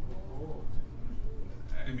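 Audience murmuring with soft, low 'ooh'-like voiced reactions, over a steady low hum from the room's sound system.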